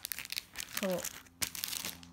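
Clear plastic packaging of sticker packs crinkling as a hand handles and shifts it, in a run of irregular rustles.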